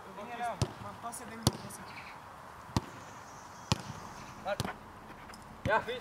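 A football being kicked between players on grass: about five sharp thuds, roughly a second apart, with faint calling voices in between.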